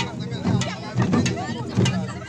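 Traditional dance music: drum beats about every half second, with sharp percussive strikes, under many voices talking and calling at once.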